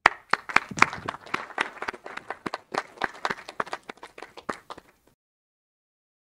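Audience applause at the close of a talk, many individual claps overlapping. It cuts off suddenly about five seconds in.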